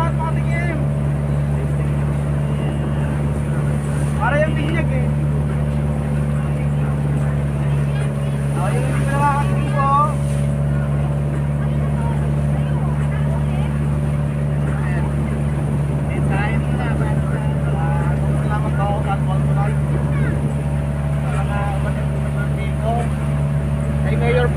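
Steady drone of a motorized outrigger boat's (bangka's) engine running at a constant speed under way. Scattered passenger chatter sits over it.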